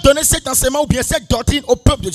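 A man's voice over a microphone in a fast, even run of short syllables, with no words the transcript could catch.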